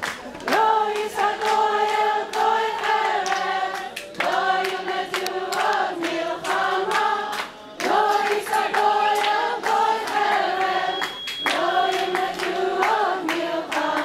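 A group of voices singing a Hebrew song together, in phrases with short breaks between them, with hands clapping along in time.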